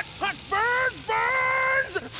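A man's high-pitched strained vocalising: a few short grunts, then one long held grunt, as he strains to squeeze his body down a chimney.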